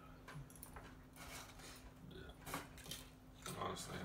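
Faint, low talk and small table noises from handling food, including a few brief clicks, over a faint steady hum.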